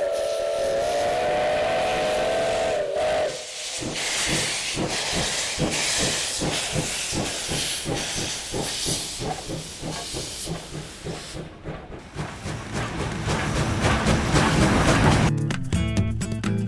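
A steam locomotive's whistle blows one steady chord for about three seconds. Then the engine chuffs in a regular rhythm under hissing steam as it gets under way. Music comes in near the end.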